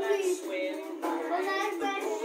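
A group of young children singing a song together in chorus.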